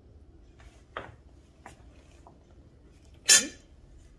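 A metal spoon clinking lightly against a metal colander and plate a few times as food is spooned out, with one short, louder scrape about three seconds in.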